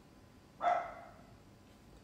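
A single short dog bark about half a second in, fading quickly.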